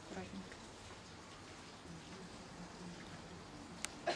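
Quiet background hiss with faint, low voices murmuring, and a single sharp click near the end.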